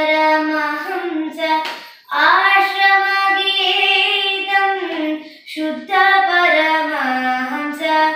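A young girl singing a Carnatic devotional song solo, in long held notes with winding ornaments, breaking for breath about two seconds in and again past the middle. The judge finds her singing off the set pitch (shruti), with the tala slipping at times.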